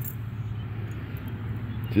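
A steady low hum under a faint, even outdoor background noise.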